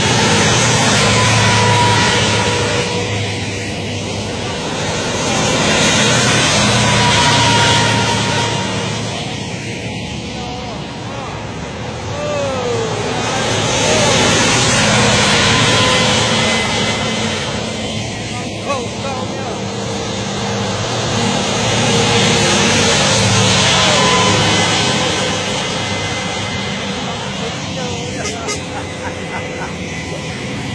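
A column of PT-91M Pendekar main battle tanks driving past one after another. Their diesel engines and rubber-padded tracks rise and fade in four loud swells about eight seconds apart.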